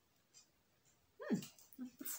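Quiet at first. About a second in come a few short, quiet vocal sounds, each dropping quickly in pitch.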